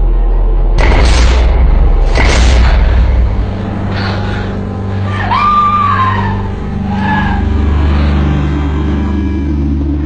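Dramatic film soundtrack: a deep sustained drone, with two sudden noisy swells near the start and a short sliding high tone about halfway through.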